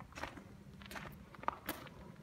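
Footsteps on loose gravel: several uneven crunching steps.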